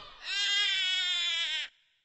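A single high voice holding one long, wavering note with the backing music gone, cut off abruptly near the end.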